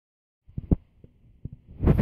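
Camera handling noise: a few soft low knocks, then a brief swelling rush of noise near the end as the phone is swung round.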